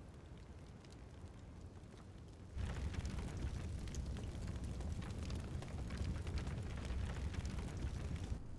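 Low rumbling ambience, then about two and a half seconds in a louder rush of open fire in braziers, crackling with many small pops.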